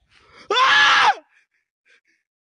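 A short, loud, high-pitched vocal cry lasting just over half a second, dropping in pitch as it ends, after a faint breathy lead-in.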